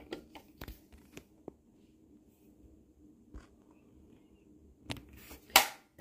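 Scattered light clicks and taps from a 1:18 scale diecast model car being handled, its small hinged parts being worked, with a louder click shortly before the end.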